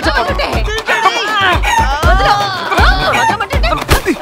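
Children yelling and shrieking over each other as they wrestle, with background music carrying a steady low beat.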